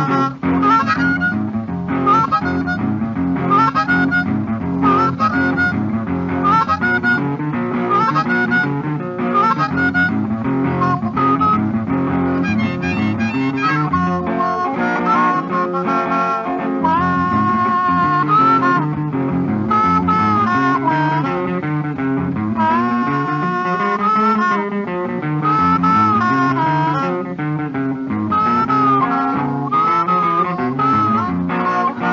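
Instrumental break on a 1948 post-war Chicago blues record: a blues harmonica plays riffs with sliding, held notes over a boogie guitar bass line, with no voice.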